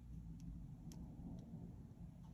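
Dip pen nib tapping on paper as white ink dots are placed: three faint light ticks about half a second apart over a low steady room hum.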